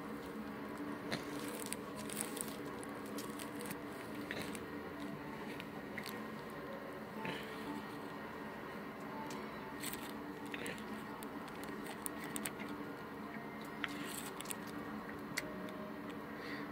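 Faint background music, with scattered light clicks and taps of a dog moving about and sniffing on a hard floor.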